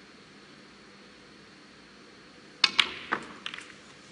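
Snooker balls clicking. A sharp click of the cue ball being struck, a second click as it hits the object ball, then a spray of smaller clicks as it goes into the pack of reds and the reds knock together, dying away within about a second.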